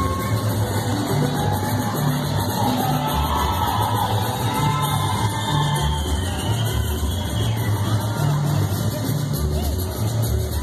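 Chihuahua-style polka music with a bass line bouncing steadily between two notes, and a crowd's voices underneath.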